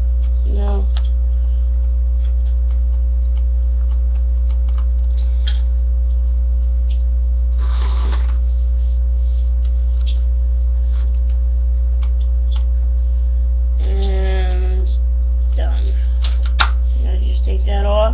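A loud, steady low electrical hum runs throughout, under faint scattered clicks and scrapes of a screwdriver working small screws loose on an RC truck. One sharp click comes near the end.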